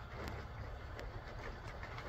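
Faint outdoor background: a steady low rumble with a couple of light ticks.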